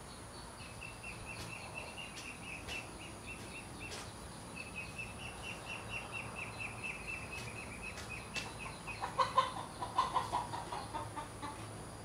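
Bird calls: a fast run of short, high chirps with a brief break, then louder clucking calls a few times near the end. A faint, steady, high insect-like whine runs underneath.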